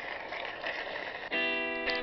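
Faint hiss, then a little past halfway a guitar chord is struck and rings on, slowly fading.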